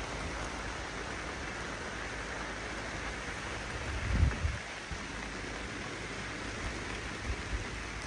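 Heavy rain falling steadily in a downpour, an even hiss of rain. A brief low thud about four seconds in.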